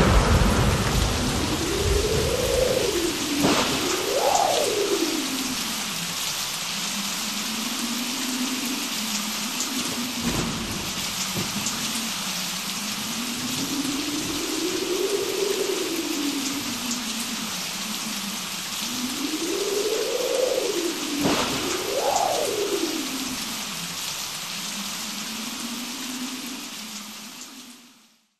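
Steady rain hiss with occasional thunder, under a single tone that slides slowly up and down. It all fades out at the very end.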